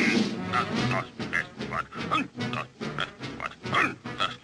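Cartoon background music with a regular pattern of short grunting vocal sounds, about two or three a second.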